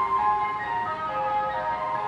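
An ice cream van's chime playing its tune as a melody of clear, bell-like single notes, with a low rumble of the moving van underneath.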